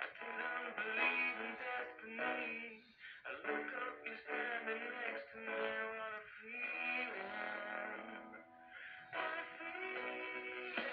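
Music with a melody over held chords playing from a television's speakers, dipping briefly a few times; the sound is dull, with no high treble.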